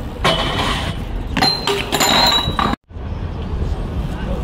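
A BMX bike landing a jump down a concrete stair set: a burst of impact and tyre noise just after the start, then a run of metallic clinks and rattles from the bike, over crowd noise.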